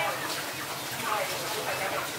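Indistinct voices talking in the background, over a low steady hum.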